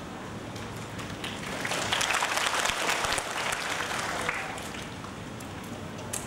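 Audience applauding in a large hall, swelling about two seconds in and dying away a couple of seconds later.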